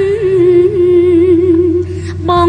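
A woman singing one long held note with a gentle vibrato, over steady instrumental accompaniment; the note ends near the end.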